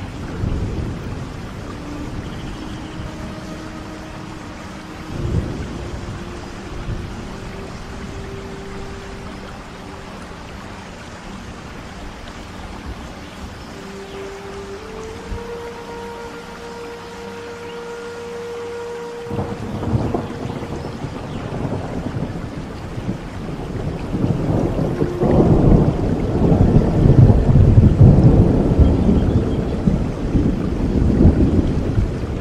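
Steady rain with a soft Native American flute melody of slow, held notes stepping upward. About twenty seconds in, thunder rumbles, then builds into a longer, louder rumble near the end.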